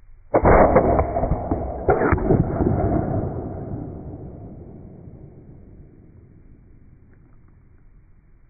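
Slowed-down replay of an AEA Terminator 9mm air rifle shot and its PolyMag slug hitting a honeydew melon with a steel plate behind it: a sudden blast, a second sharp strike about a second and a half later, then a long fade over several seconds.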